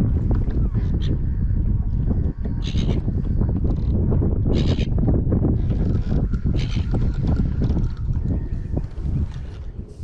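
Wind buffeting the microphone, a heavy low rumble throughout, with several brief hissing bursts; the clearest come about three and five seconds in.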